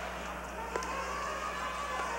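Ice hockey arena ambience on an old broadcast tape: a low crowd murmur over a steady electrical hum, with a single sharp click of a stick on the puck about three-quarters of a second in.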